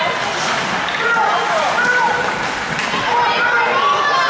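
Ice hockey rink sound during play: spectators' voices and calls over a steady hiss of skates scraping on the ice.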